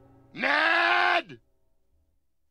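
A cartoon man's drawn-out groan of pain after a fall, about a second long, dropping in pitch as it trails off.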